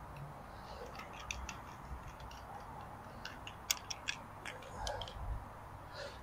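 Faint, scattered clicks of a black plastic bulkhead tank fitting being handled and its locknut unscrewed, with a few sharper clicks about four seconds in.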